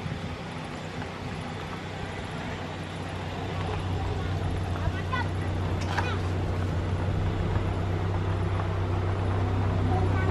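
Steady low engine hum, like a motor vehicle running nearby, growing louder about four seconds in, with a few short high squeaks around the middle.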